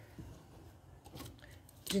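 Faint handling sounds of ribbon being folded around a plastic headband, with a few light clicks near the middle as small thread snips are picked up.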